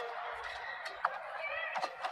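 Badminton rally: two sharp racket strikes on the shuttlecock, about a second in and near the end, with short squeaks of shoes on the court mat between them, over the steady hum of an arena crowd.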